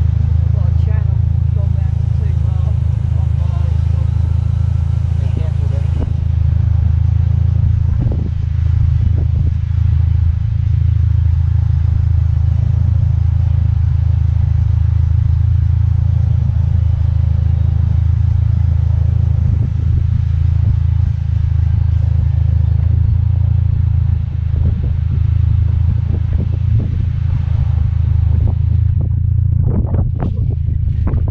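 Strong wind buffeting the microphone: a loud, steady low rumble, with a few brief knocks.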